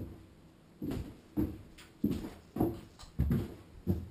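A person's footsteps on a hard floor, a steady walking pace of about one step every 0.6 seconds.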